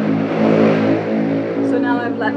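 A motor vehicle engine running steadily, an even, unchanging drone. A voice starts near the end.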